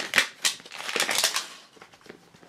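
Crinkly plastic wrap being peeled off a plastic toy ball, with a string of sharp crackles and clicks that thin out and fade in the second half.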